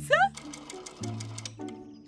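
Rotary telephone dial being turned and running back, with a quick, even run of clicks at about ten a second, over soft background music.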